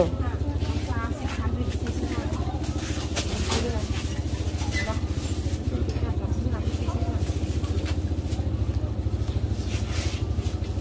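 An engine running at idle: a steady low hum with a fast, even pulse, under faint talk.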